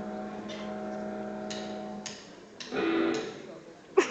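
Amplified guitar notes during tuning between songs: one note held for about two seconds, a few sharp clicks, then a short louder note near the end, under murmur from the audience.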